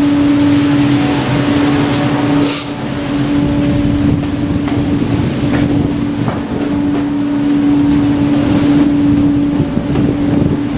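A steady mechanical hum holding one pitch throughout, over a noisy background wash.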